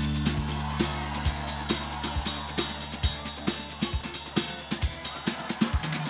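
Instrumental break from a band: a drum kit plays a steady beat, the kick drum about twice a second under quick hi-hat strokes, over a long-held low bass note that drops out near the end.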